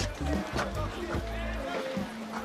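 Background music with a low, sustained bass.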